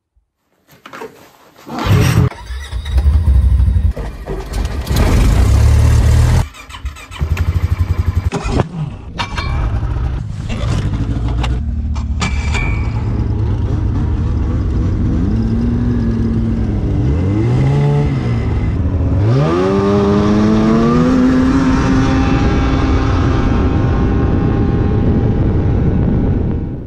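Snowmobile engines running at speed on the trail, loud. In the first half the sound changes abruptly several times. Later the engine revs rise and fall a few times, then hold high and steady near the end.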